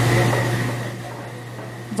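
Kitchen background noise: a steady low mechanical hum with a hiss over it, easing down in level through the two seconds.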